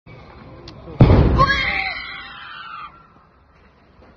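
A single loud explosion from a burning house about a second in, dying away over the next two seconds, with people's voices crying out right after it.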